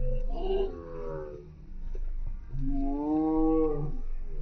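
Spectator shouting encouragement to a finishing runner: a short shout, then one long drawn-out call held about a second and a half near the end, over a steady low rumble.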